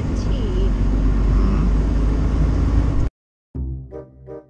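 Semi truck's engine and road noise heard from inside the cab while driving, a steady low rumble that cuts off abruptly about three seconds in. After a short silence, keyboard music starts near the end.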